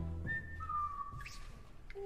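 A two-note whistle: a short high note, then a lower, longer note that sags slightly in pitch, heard in a gap in the music.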